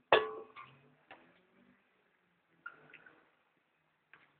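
A sharp click just after the start, then a fainter click about a second in and a few brief faint sounds.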